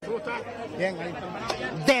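Speech only: people talking close to the microphone, with chatter around them.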